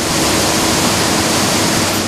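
Coffee dry-mill machinery running, with coffee beans pouring through wooden chutes: a loud, steady rushing noise with a faint hum under it.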